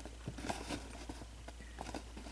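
Faint, scattered light taps and rubs of fingers handling a cardboard box as it is turned, over a low steady hum.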